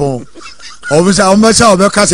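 A man's voice in long, drawn-out, wavering sing-song calls that start about a second in after a short lull.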